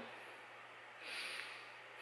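A person's faint short exhale, a soft hiss of breath lasting about half a second from about a second in, over quiet room tone with a low steady hum.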